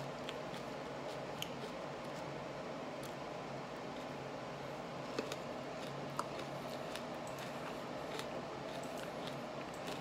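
Faint, scattered mouth clicks from a person chewing serrano peppers with his mouth closed, over a steady low hum of room noise. A couple of sharper ticks come about five and six seconds in.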